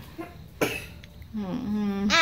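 A person's short cough about half a second in, then a drawn-out voiced hum near the end that runs into speech.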